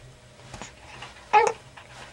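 A baby makes one short, high-pitched coo about a second and a half in.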